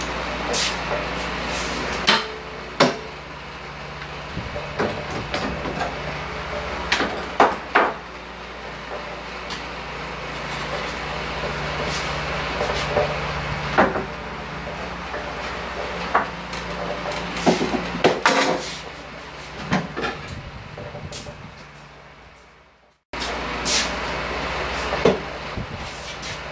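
Scattered knocks, clunks and scrapes of a long wall shelf being handled, lifted and repositioned against a wall, over a steady background hum.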